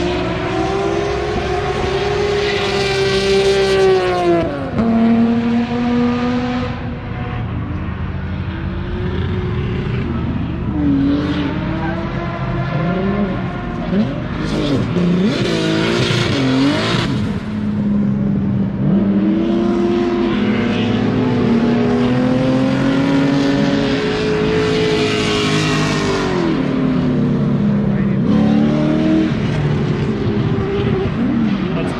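Drift cars' engines revving hard on the track, their pitch climbing and dropping again and again as they slide through the corners, with tyres screeching in bursts.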